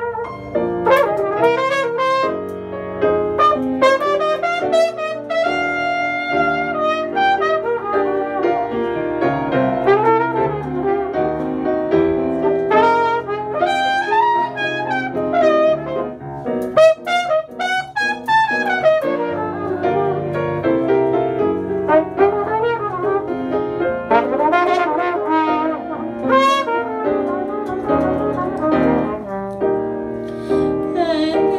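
Trumpet playing a melodic jazz-ballad line over piano accompaniment.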